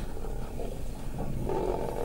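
Asiatic lions growling, a low rough growl that swells up about one and a half seconds in.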